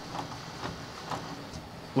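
Faint handling noise: a few light ticks and rustles as fingers move among wires and parts on a pegboard, over a steady low hiss.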